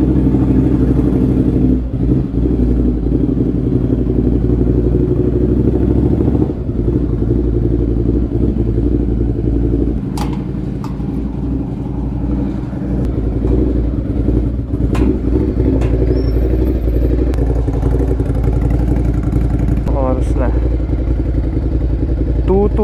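Ducati Scrambler's air-cooled L-twin engine idling steadily in an underground parking garage, with a few sharp metal clanks around ten and fifteen seconds in as the garage gate is pushed open.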